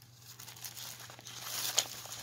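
Paper and clear plastic packaging crinkling and rustling as craft items are handled by hand: a dense run of small crackles that grows louder, with one sharper crackle near the end.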